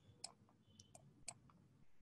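A few faint computer mouse clicks, about four spread over two seconds, against near silence.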